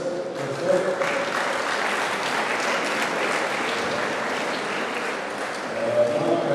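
Audience applauding in a large hall, swelling about a second in and dying away near the end.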